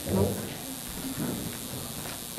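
Indistinct voices murmuring in a hall, with a short, louder sound just after the start.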